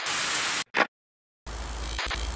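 TV-static glitch sound effect: a burst of hissing static lasting over half a second, a short blip, a moment of silence, then the static cuts back in near the end with a low hum beneath it.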